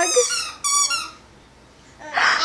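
Sheltie puppy giving two short high-pitched squeaky whines in the first second.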